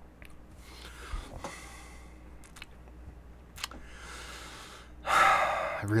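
A man breathing out after a sip of beer: two soft breaths with a few faint clicks, then a loud, long exhale about five seconds in.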